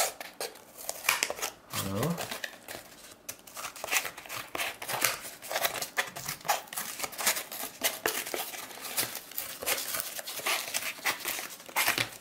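Leatherman Raptor rescue shears, with one smooth and one finely serrated blade, cutting through thick corrugated cardboard wrapped in packing tape: a long run of irregular crunching snips and crackles. The shears have to bite hard; this is the hardest material they have cut so far.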